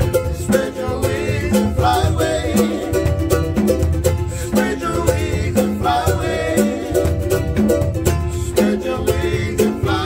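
Live acoustic island band: two ukuleles strummed in a steady rhythm with a drum beaten with sticks about once a second, and men singing together over it.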